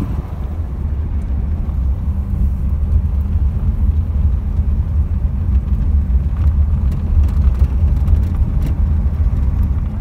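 Low, steady engine drone and road noise from inside an air-cooled vehicle driving along, growing slightly louder toward the last few seconds.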